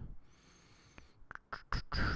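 The tail of an exhaled breath, then low room noise with a faint high whine, then a few short, soft clicks in the second half.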